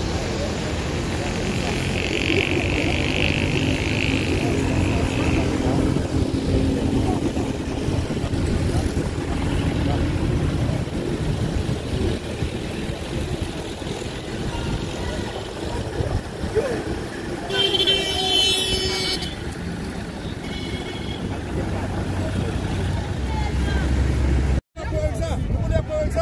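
Outdoor street noise: vehicle engines running with voices in the background. A vehicle horn sounds briefly about two-thirds of the way through, and the sound drops out for a moment near the end.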